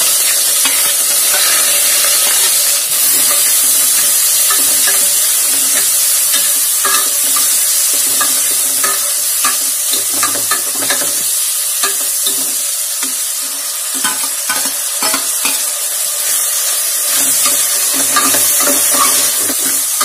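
Sliced onions and tomatoes sizzling steadily in hot oil in a pressure cooker. A steel ladle scrapes and clicks against the pot as they are stirred, most often in the second half.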